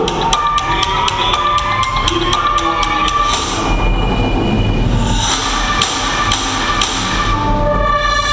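A film trailer's musical score: a fast run of knocking percussion hits, about four a second, over held tones. A deep rumble swells in the middle.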